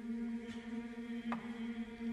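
A steady, low sustained drone held on one pitch, with a few faint clicks of crackle over it.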